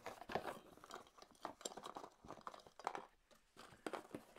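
Faint rummaging and handling of packaging: crinkling and rustling with many scattered small clicks and taps, while a guitar pickup in its box is fetched and unpacked.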